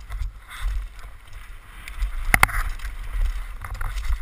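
Downhill mountain bike ridden fast over a rough dirt trail, heard from a helmet-mounted camera: a steady low rumble of wind on the microphone under the rattle of the bike over bumps, with two sharp knocks about two and a half seconds in.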